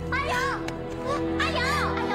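A high-pitched voice calling the name "A Yao" twice, over steady, sustained background music.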